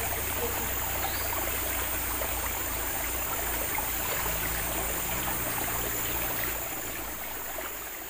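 Shallow forest stream flowing and trickling steadily, a continuous rush of water that drops a little in level near the end.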